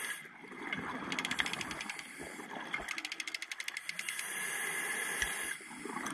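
A scuba diver breathing through a regulator underwater. A bubbly, rapidly clicking exhale runs from about one to four seconds in, then a steady hiss of inhaled air follows until shortly before the end.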